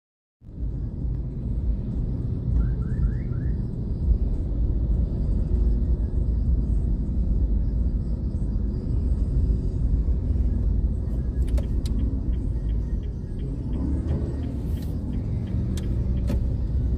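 Steady low rumble of a car's engine and road noise heard from inside the cabin while it creeps through slow traffic, with a few sharp clicks near the end.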